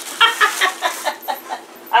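A woman laughing in a rapid run of short pitched bursts, about five or six a second.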